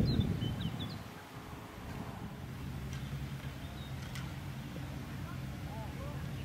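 Outdoor course ambience: a low rumble of wind on the microphone that dies away in the first second, a few short bird chirps, a steady low hum from a distant engine, and a single faint click about four seconds in.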